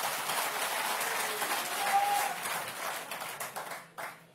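Audience applause, fading out near the end.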